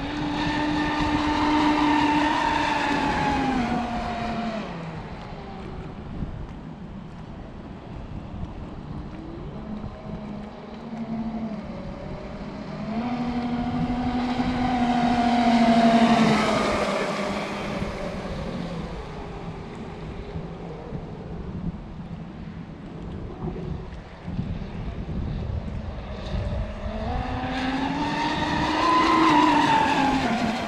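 Electric RC speedboat with a high motor whine, passing close three times: each pass grows louder and then drops in pitch as it goes by. Wind rumbles on the microphone underneath.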